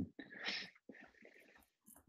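A person's short, breathy vocal burst through a call microphone about half a second in, followed by faint breathing.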